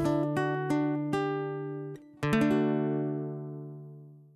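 Guitar music: a run of single plucked notes, then a closing chord struck a little after two seconds in and left to ring and fade away.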